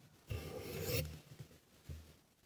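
Paper pages of a book being turned close to a lectern microphone: one rustle of paper lasting under a second, then a soft low bump near the end.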